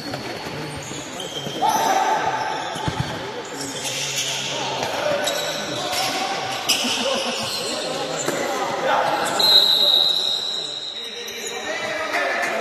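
Futsal game sounds in a reverberant hall: the ball being kicked and bouncing on the court, with players shouting and short high squeaks. A high, held tone lasts about a second near the end.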